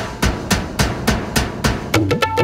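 Percussion passage in a 1990s Bollywood film song: loud drum strokes about three a second over a bright wash of noise, with no singing.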